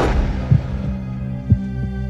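Dark background music: a steady low drone with a heavy low thump about once a second, like a heartbeat. A whoosh that swells up just before the start fades away over the first second.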